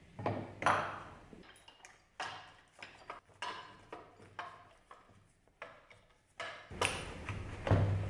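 Steel tools and cast-iron vise parts clanking on a workbench: a dozen or so sharp metallic knocks with brief ringing, irregularly spaced, the loudest about a second in and near the end.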